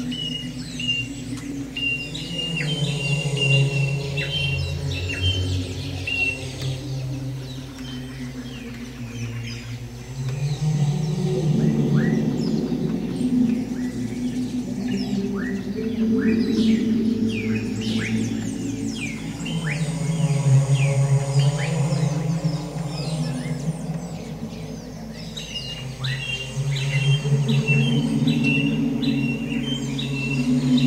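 Ambient music of sustained low drone chords, layered with bird chirps and calls. Runs of short, even high chirps come at the start and again near the end, with scattered falling whistles between them.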